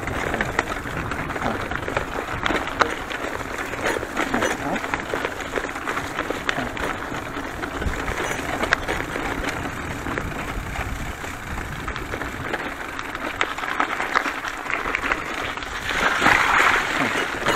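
Bicycle riding over a bumpy dirt forest track strewn with fallen leaves: a steady rolling, rushing noise from the tyres, broken by many small clicks, knocks and rattles from the bumps.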